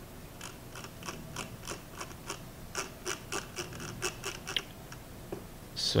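A run of light, sharp clicks, about three a second, lasting some four seconds and then stopping, over a low steady hum.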